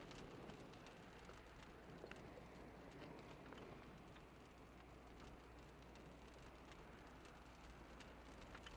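Near silence: a faint steady hiss with a few faint, scattered ticks.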